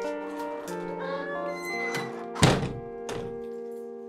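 A door shut with a single heavy thunk a little past halfway, over soft background music of long held notes.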